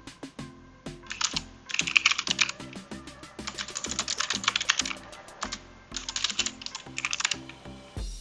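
Fast typing on a computer keyboard, keystrokes clicking in three quick bursts as a command is entered, over background music.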